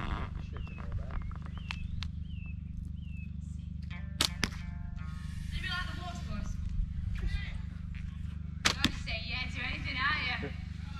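Background voices and music from a stage performance over a steady low hum, with two pairs of sharp cracks, about four seconds in and again near nine seconds.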